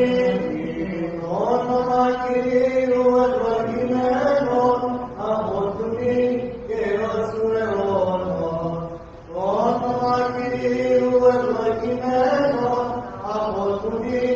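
Orthodox liturgical chant sung during Holy Communion: a slow melody in long held notes, gliding up and down between pitches, with a short break for breath about nine seconds in.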